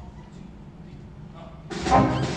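A hushed hall, then about 1.7 s in a jazz big band of saxophones, trumpets and trombones with piano, bass and drums comes in suddenly and loudly on the tune's opening.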